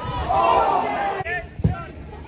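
Football fans in the stand letting out an "oh" of reaction, their voices fading after about a second, then a single sharp thud about one and a half seconds in.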